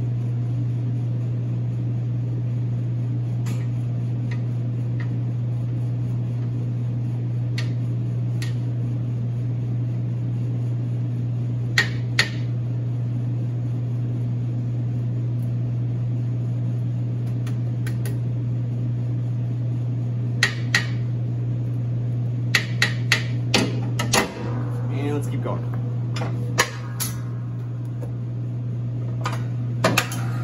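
A spatula scraping down the steel bowl and paddle of a large commercial stand mixer, giving scattered clicks and knocks that come thicker in the second half. A steady low hum runs underneath.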